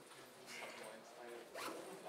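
Two quick scraping strokes at the lectern, about half a second and a second and a half in, over faint voices in the room.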